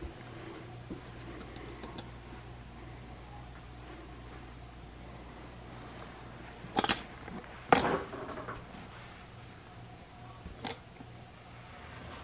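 A quiet room with a faint, steady low hum. Two sharp knocks come about a second apart near the middle, and a fainter tap follows a few seconds later.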